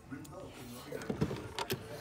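Handling noise from a phone being moved around, with a few soft clicks and knocks about a second in and again near the end.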